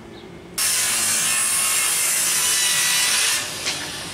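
Power saw cutting through wood: a steady, loud cut that starts suddenly about half a second in and stops abruptly after about three seconds.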